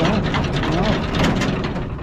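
1987 Bizon Super Z056 combine harvester running, with a dense rattling hiss as dust and chaff left from field work are blown out of its workings.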